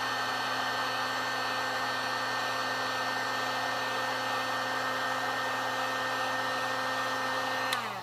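Electric heat gun blowing steadily, a constant airflow whoosh with a steady motor hum. Near the end it is switched off with a click, and the hum slides down and fades as the fan winds down.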